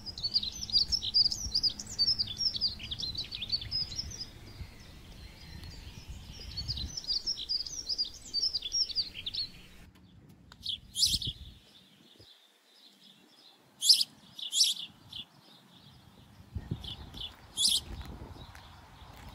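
Small birds chirping in quick twittering runs, then a few separate, louder high calls in the second half. A low rumble lies under the first few seconds.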